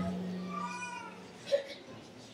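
A short lull in a large echoing hall: a man's voice dies away in the echo, a faint high voice calls out briefly, rising then falling in pitch, and a small brief knock follows.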